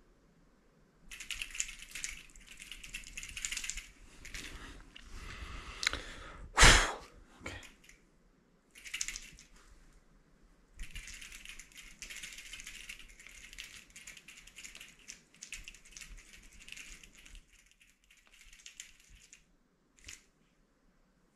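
Cloth sock puppet and sleeve rustling and scraping in repeated bursts as the puppet is worked, with one sharp knock about seven seconds in.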